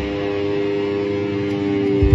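Live rock band holding one sustained chord on guitars and keyboard with the drums and bass dropped out, a steady ringing chord for about two seconds; the drums and full band crash back in right at the end.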